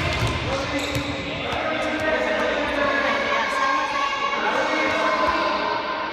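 A futsal ball being kicked and bouncing on a wooden sports-hall floor, each thud echoing in the large hall, with voices in the background.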